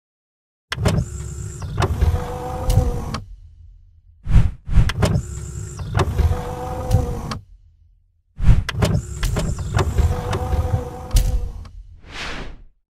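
Mechanical sound effect for an animated intro, a motorised whirring with sharp clicks, played three times over, each run about three seconds long with a short pause between.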